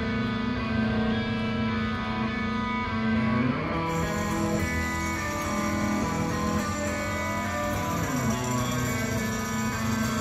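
Electric guitars of a live rock band playing held chords, sliding to new chords about three and a half seconds in and again near eight seconds.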